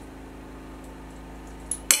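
Faint room tone while a metal Arca-Swiss clamp is handled, then one sharp metallic clink near the end that rings briefly, as a small metal insert is worked free of the clamp.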